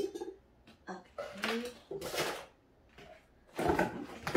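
Cardboard box flaps rustling and being pressed shut while an enamelled cast-iron pot is handled, with a sharp knock at the start.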